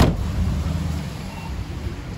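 A single sharp thump, then the steady low rumble of a car.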